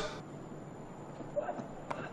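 Quiet cricket-ground ambience, then just before the end a single sharp crack of a cricket bat striking the ball.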